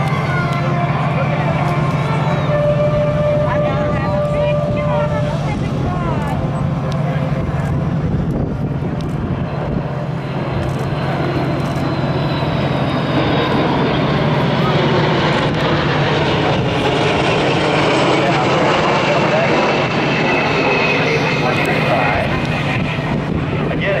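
Boeing KC-135 Stratotanker flying a low, slow pass overhead: its four jet engines build up from about halfway through into a loud rushing noise with a high whine that slowly falls in pitch as it passes. Crowd voices and a steady low hum sit under the first half.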